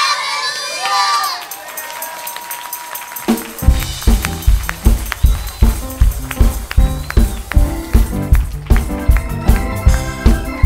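A group of children's voices finishing a song, then crowd noise in the hall. About three seconds in, a band starts up with a steady beat of kick drum and bass, about two beats a second.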